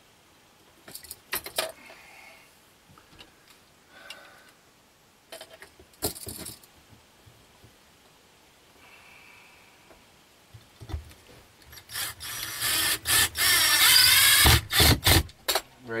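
A screw being driven through a metal outlet box into a wooden wall stud: a loud stretch of grinding and squeaking a few seconds long near the end. Before it, scattered clicks and rattles from handling the metal box and screws.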